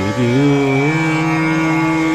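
Male Hindustani classical voice chanting a devotional mantra over a steady drone. The voice comes in with a swoop, slides up, and settles on a long held note about a second in.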